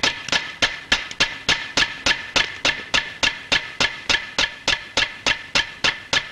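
Suspense film score: a steady, clock-like ticking of sharp percussive clicks, about four a second, over a faint held high note.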